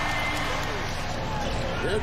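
Televised NBA game sound: a steady arena crowd with a basketball being dribbled on the hardwood, and a broadcast commentator faintly under it.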